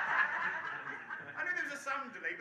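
Laughter from a small audience and the volunteer on stage, fading early on into scattered chuckles and murmured voices, with one short laugh near the end.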